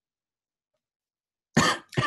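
Dead silence on a video-call line for about a second and a half, then a short burst of a man's voice near the end as participants start saying goodbye.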